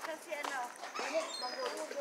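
Ducks quacking softly in short calls, with faint voices and a few high bird chirps behind them.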